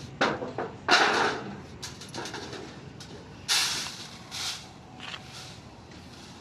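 Pounded pearl millet tipped out of a mortar onto a thin metal tray: a few short rattling pours of grain on metal, the loudest about a second in and again past halfway.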